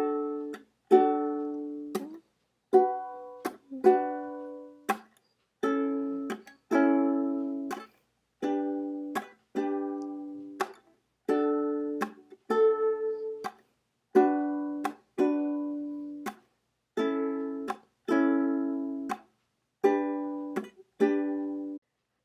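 Ukulele playing a D, B minor, A, G chord progression in a pull-and-tap pattern. All four strings are pulled together with the fingers, then tapped and muted with the knuckles, so each chord rings briefly and is cut off short. About sixteen chords go by in an even rhythm.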